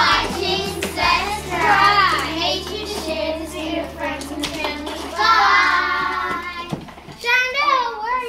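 Several children's voices singing or chanting together, with long held notes about two seconds in and again between five and six and a half seconds.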